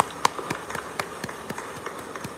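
Hands clapping in applause: a run of sharp, distinct claps, the strongest about four a second, with fainter claps between.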